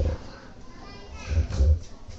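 Children's voices chattering in a large hall, with a brief low rumble about one and a half seconds in.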